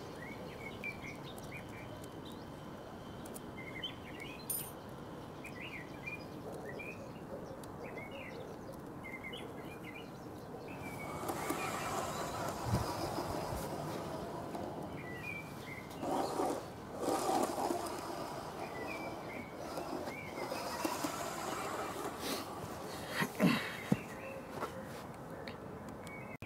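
Small birds chirping in the background. From about eleven seconds in, a garden-railway goods wagon rolls along the track for about twelve seconds, a steady rolling noise with a few clicks.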